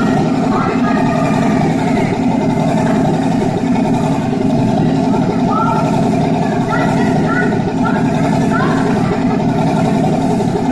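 Loud, steady engine-like drone of a helicopter sound effect, part of a war-scene soundtrack, with voices mixed in and short rising calls now and then.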